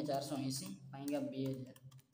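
A man's voice speaking under his breath while the plastic keys of an Orpat OT-512GT desktop calculator are pressed with a finger, giving light clicks.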